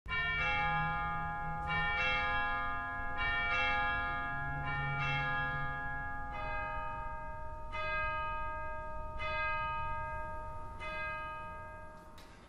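Church bells tolling: a slow series of strokes about a second and a half apart, each left ringing, with the strokes dropping lower in pitch about halfway through and the ringing fading out near the end.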